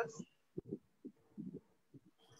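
A pause in speech on a video call: a few faint, irregular low thuds and a faint steady hum.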